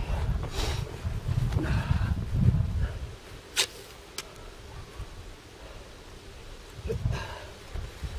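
Wind rumbling on the camera microphone, strongest in the first three seconds, with two sharp clicks a little past the middle.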